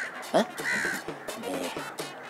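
A crow cawing twice: a short call right at the start and another just under a second in. Between the two calls a brief, loud rising voice sound breaks in.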